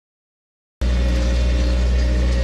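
After a silent first moment, a tractor engine cuts in suddenly. It runs steadily with a low, even hum as the tractor drives along carrying a bale spear.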